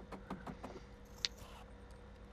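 Faint clicks and light knocks of hands handling a plastic drain pipe at its rubber no-hub coupling, with one sharper click a little past halfway, over a low steady hum.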